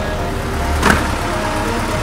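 A steady low hum with faint sustained tones, and one short knock about a second in.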